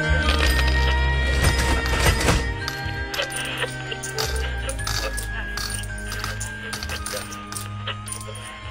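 Hip hop remix music with no vocals: a deep bass line under several held synth tones and sharp clicking, clinking percussion. It slowly gets quieter.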